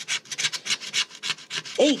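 Scratch-off lottery ticket being scratched with a small scratcher tool: quick back-and-forth rasping strokes, about six a second, scraping the coating off the winning-numbers area of the card.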